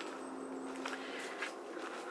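Footsteps climbing rough stone steps, a few separate scuffs and taps about a second in and near the end, over a steady low hum.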